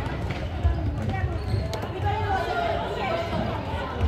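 Echoing sports-hall sound of a children's indoor football game: distant voices and shouts, with thuds of the ball and running feet on the wooden floor and a sharp knock from a kick about two-thirds of a second in.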